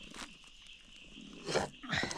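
A pause in knife chopping of chicken on a wooden board, with a brief wet rustle about one and a half seconds in as a hand gathers the minced meat on a plastic sheet.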